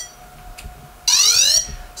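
Yuneec Typhoon H hexacopter powering on. A short high electronic beep at the start, then about a second in a loud rising electronic sweep lasting about half a second: the drone's start-up tone.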